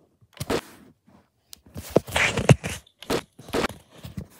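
Handling noise of a Lego-brick model rifle: plastic bricks clicking and scraping as the fire selector is moved and the model is turned in the hand. There are several short scrapes and knocks, the longest and loudest about two seconds in.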